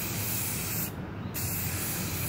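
Rust-Oleum gloss clear aerosol can spraying a steady hiss of clear coat, with a short break about a second in.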